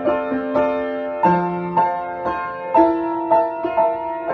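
Upright piano played in a slow improvisation: notes and chords in the middle register struck about twice a second, each left to ring into the next.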